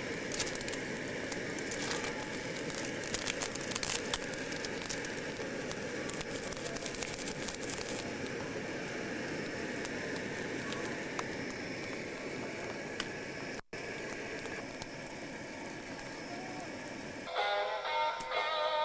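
A pot of instant ramen boiling over a gas camp stove: a steady hiss and bubbling with scattered crackles, busier in the first half. The sound drops out for an instant about three-quarters through, and guitar music comes in just before the end.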